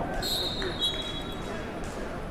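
Referee's whistle blown once, a steady shrill tone lasting about a second and a half, over the chatter of a crowded gym.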